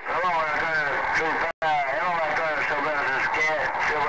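A voice received over a Galaxy CB radio, heard through its speaker with a narrow, radio-thin sound and words hard to make out. The audio cuts out completely for an instant about one and a half seconds in.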